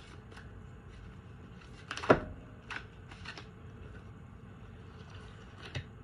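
A thick double deck of oracle cards being shuffled by hand: soft scattered clicks and rustles of card stock, with one sharp, much louder slap about two seconds in.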